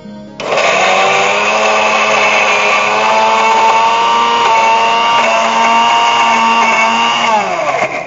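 Electric mixer grinder (Indian mixie) running with its stainless-steel jar, the lid held down by hand. The motor starts abruptly about half a second in, runs steadily, then winds down with a falling pitch near the end.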